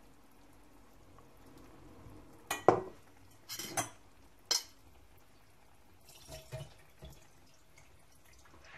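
Kitchenware being handled: several sharp clinks and knocks of utensils or dishes. The loudest is a double knock about two and a half seconds in, with another pair near three and a half seconds, one near four and a half, and two soft ones after six seconds.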